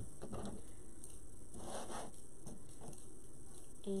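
Faint handling sounds of craft materials on a tabletop: light ticks and a brief rustle about halfway through, as wire and tools are picked up.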